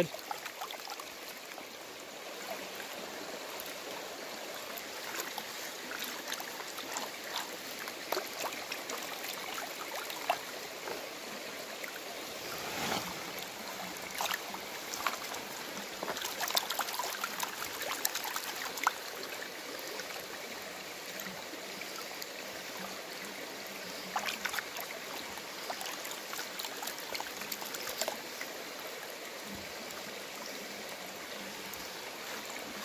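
Gold pan being worked underwater in a shallow creek: steady running and sloshing water with many small splashes and clicks as gravel and clay are washed out of the green plastic pan. The clicks come in busier clusters partway through and near the end.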